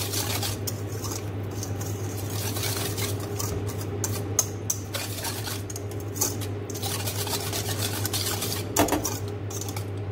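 A wire whisk beating eggs, water, oil, powdered milk and sugar in a stainless steel bowl: a fast, continuous scraping and clinking of the wires against the metal, with a few sharper knocks.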